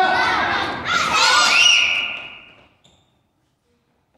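A group of children shouting "hoi!" together as karate kiai: two shouts, the second drawn out and fading by about two seconds in.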